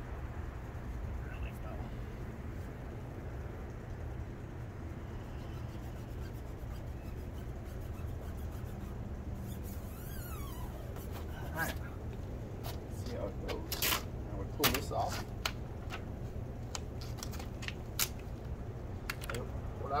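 Crackles and sharp clicks of a decal's clear plastic transfer film being rubbed down by hand and lifted at its edge, scattered irregularly from about halfway, over a steady low hum.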